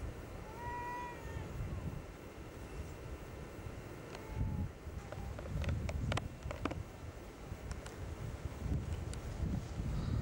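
An animal's single short call with a slight rise and fall, about a second in, over a low rumble of wind on the microphone, with a few sharp clicks around six seconds in.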